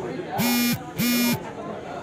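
Two short buzzer tones, each about a third of a second long with a flat, steady pitch, sounding about half a second apart.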